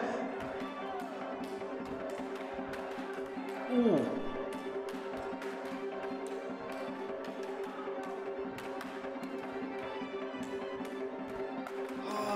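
Georgian dance music with a sustained drone, heard through the video's playback, overlaid with many sharp, irregular clashes of steel swords in a sword-fight dance. A brief falling vocal cry about four seconds in.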